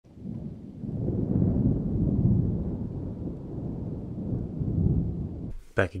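A low rumbling noise that swells up within the first second or two, rolls on unevenly, and cuts off abruptly shortly before the end.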